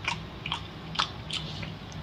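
Close-up wet eating sounds: a few soft, sticky clicks and squelches about every half second as a whole sauce-coated octopus is handled and bitten.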